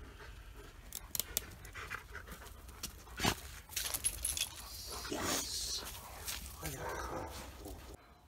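Dog panting while moving about on leash over dirt and leaf litter. There are a few sharp clicks about a second in and a louder single knock about three seconds in.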